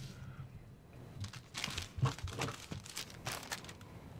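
Clear plastic packaging bag crinkling in irregular bursts as it is handled.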